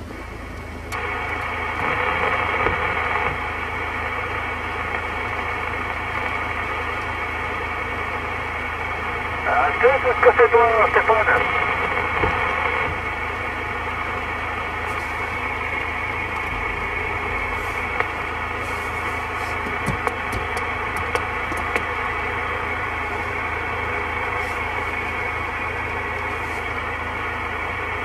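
President Lincoln II+ CB transceiver receiving on 27 MHz lower sideband: steady static hiss from the speaker, rising about a second in. Around the middle, a weak, garbled voice of a distant station comes through for about two seconds. A low hum runs underneath.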